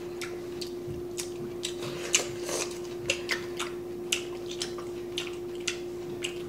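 Close-up eating sounds of people chewing bulgogi beef: irregular sharp clicks and smacks of the mouth, about two a second, over a steady hum.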